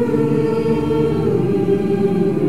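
A large mixed-voice choir singing long held notes in harmony, a chanted chord. Lower voices come in fuller right at the start, and the upper parts shift pitch about midway.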